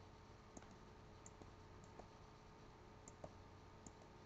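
Near silence: faint room hum with a few scattered soft clicks, about seven in four seconds, from the computer input device being used to erase and rewrite digital ink.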